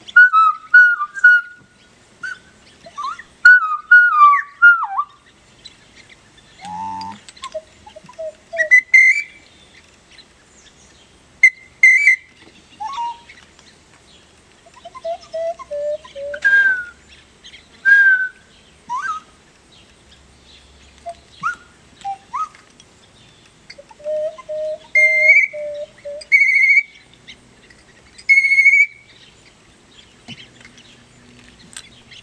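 Handheld bird-call whistles blown in short whistled notes and phrases imitating bird calls, one played with hands cupped around it. Many notes slide down in pitch, lower notes alternate with higher ones, and near the end three evenly spaced higher notes repeat.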